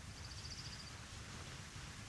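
Quiet outdoor ambience with a faint, rapid bird trill of high, slightly falling notes in the first second.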